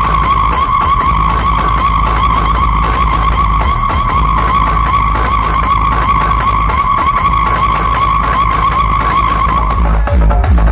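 Huge DJ loudspeaker rig blasting a sustained, slightly wavering high-pitched electronic tone over deep bass, a screeching effect that sounds like a skidding or racing car.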